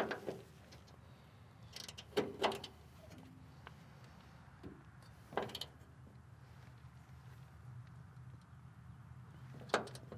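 Hand tools working the top 17 mm bolt of a Subaru Sambar's rear shock absorber: a few sharp metallic clicks and knocks of wrench and socket on the bolt, a cluster about two seconds in, one midway and one near the end.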